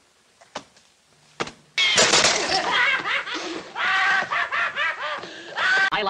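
Laughter breaking out suddenly about two seconds in and running on loudly in quick, rising-and-falling peals, after a near-quiet start broken only by two faint taps.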